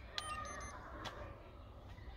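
TDB1000 handheld key programmer beeping once as a button is pressed, a short steady tone of about half a second, followed by two sharp clicks about a second apart.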